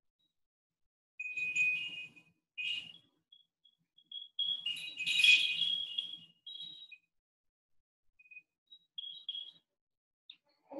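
A high, tinkling electronic jingle of short steady notes, in two or three phrases with a few scattered beeps near the end.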